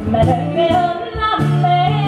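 Live Nordic folk song: a woman singing a lilting melody, accompanied by a bowed nyckelharpa and a plucked long-necked lute-type string instrument.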